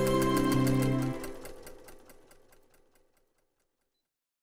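Intro jingle with held notes, fading out within the first two seconds, over the rapid, even ticking of a sewing machine stitching, which fades away about three and a half seconds in.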